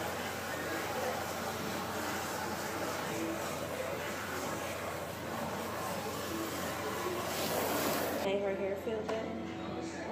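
Water from a salon shampoo-bowl sprayer hissing steadily as it rinses hair, cutting off about eight seconds in.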